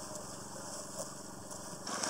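A small engine running steadily, a low even hum with no change in speed.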